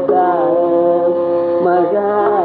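Carnatic classical music from a live concert: a melody held on long notes with sliding ornaments over a steady drone, with only a drum stroke or two from the mridangam.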